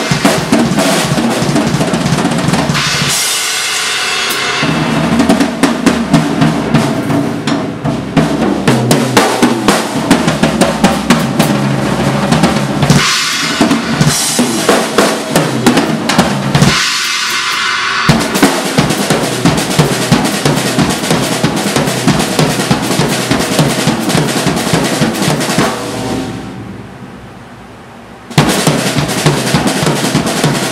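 Tama Starclassic Bubinga Elite bubinga-shell drum kit played as a fast solo: dense bass drum, snare, tom and cymbal strokes. Near the end the playing stops for about two seconds while the kit rings and fades, then crashes back in loudly.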